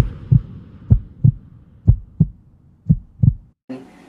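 Heartbeat-like sound effect: low double thumps, about one pair a second, cutting off suddenly shortly before the end.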